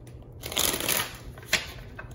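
A deck of tarot cards being shuffled: a rustling, papery burst lasting about half a second, then a single sharp click about a second and a half in.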